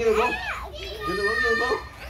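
A small child's excited voice, squealing and shouting at play, with one long, high, steady squeal held for nearly a second from about halfway through.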